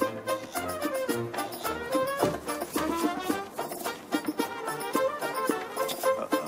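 Background film music: a tune of quick melodic notes over a regular beat.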